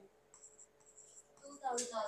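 Faint scratching of a stylus tip on the glass of an interactive touchscreen board as a word is handwritten, coming in short strokes. A voice is briefly heard near the end.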